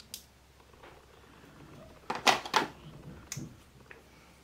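Clicks and light knocks of small makeup items being picked up and set down on a tabletop during false-eyelash application, with a louder cluster of clatter about two seconds in.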